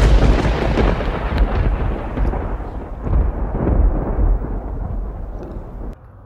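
A thunderclap, as a sound effect: it breaks in suddenly and loud, then rolls on as a long rumble that slowly dies away, and cuts off sharply near the end.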